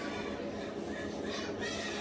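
Indistinct high-pitched voices in the background, like children talking, over a steady low hum.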